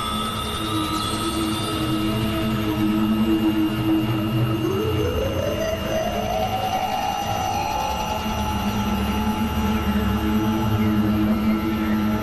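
Layered experimental electronic drone music: several steady held tones over a low rumble, with one tone gliding slowly upward about five seconds in and a few thin high sweeping tones near the start.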